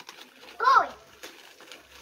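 A child's voice giving one short wordless cry, rising and falling in pitch, about half a second in.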